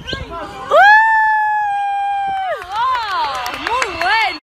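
A high voice holds one long loud note for about two seconds, then swoops up and down in wavering glides.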